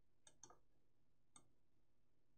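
Near silence with a few faint clicks of a computer mouse: two or three close together just after the start, then one more partway through.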